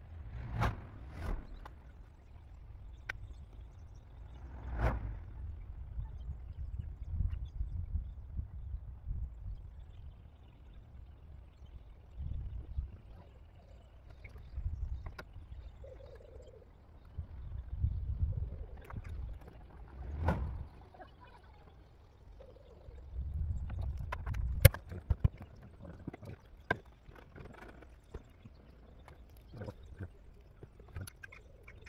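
Scattered small clicks, knocks and rustles of hand work on car wiring as wires are cut and joined with block connectors, with one sharper click about three-quarters of the way in, over intermittent low rumbling.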